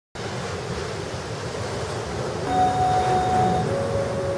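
A steady wash of ocean surf. About halfway through, sustained keyboard tones fade in over it as the song begins.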